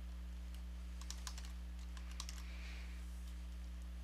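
Computer keyboard being typed on: a quick run of keystrokes spelling a short word. Under it is a steady low electrical hum.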